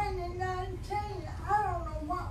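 A high-pitched voice speaking in a lively, sing-song way, with drawn-out syllables.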